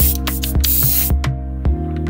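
An airbrush spraying paint with a steady hiss that stops about a second in, over background music with a regular beat.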